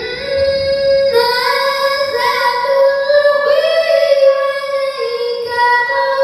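A young girl's voice chanting Qur'anic recitation (tilawah) into a microphone, in long held melodic notes that step from pitch to pitch with ornamented turns.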